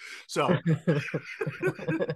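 A person laughing in a quick run of chuckles, about six or seven a second, following a short spoken word.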